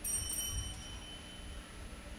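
A small bell struck once, with a bright, high ring that fades away over about a second and a half.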